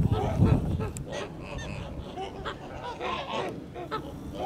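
A flock of Kholmogory geese honking, many short calls overlapping one another throughout. A brief low rumble comes just after the start.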